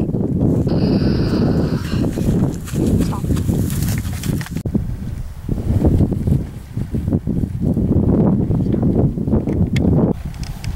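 Wind rumbling steadily on the microphone in an open field, with a short higher-pitched sound about a second in.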